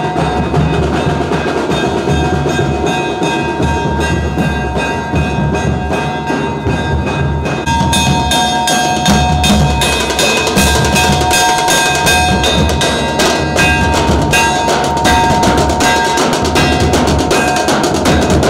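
A street band of large double-headed drums beaten with sticks in a fast, dense rhythm, with a hanging metal gas cylinder struck with a hammer ringing like a bell over the drumming. The drumming gets louder and denser about eight seconds in.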